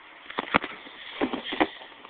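Plastic action figures knocking against each other and the toy wrestling ring, about five short clacks, the loudest a little over half a second in.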